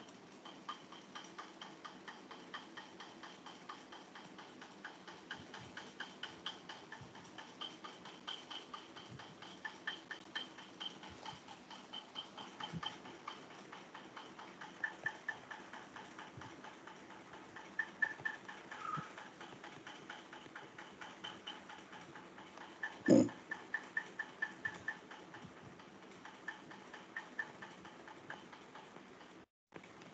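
Faint, rapid light ticking and clicking, several ticks a second, with one louder knock about 23 seconds in.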